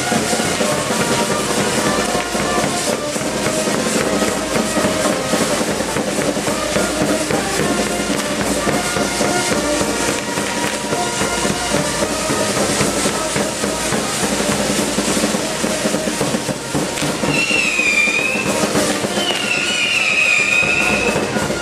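Spinning firework wheels spraying sparks, with dense continuous crackling and hissing over band music. Near the end a wavering high whistle sounds twice.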